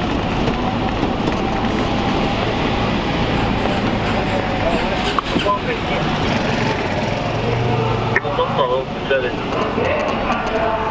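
Patrol car driving slowly, its engine and road noise heard steadily from inside the cabin.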